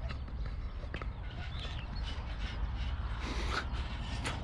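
Steady low outdoor rumble of wind and road traffic, with a few faint short high-pitched sounds, the clearest a little after three seconds in.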